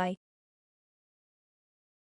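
Digital silence, after the last of a synthesized voice saying "moonlight" in the first moment.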